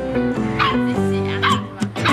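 Seven-week-old sable Shetland Sheepdog puppy barking in short, high yaps, two of them about a second apart, over background music.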